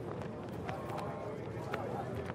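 Outdoor background noise on a live remote-broadcast microphone: a steady low hum with faint distant voices and a few soft clicks.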